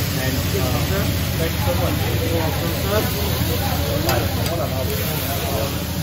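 Food sizzling on a hibachi flat-top griddle over a steady low hum, with indistinct chatter and a sharp click about four seconds in.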